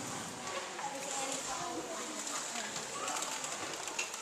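Low murmur of an audience talking quietly among themselves, with no single clear voice and light rustling.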